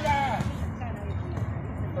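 A man's voice briefly at the start, then faint distant voices over a steady low outdoor rumble.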